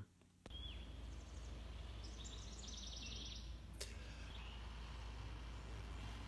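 Steady outdoor background noise with a low rumble, and small birds calling: a short chirp near the start, a rapid high trill about two to three seconds in, and another brief chirp near the end, with a single sharp click about four seconds in.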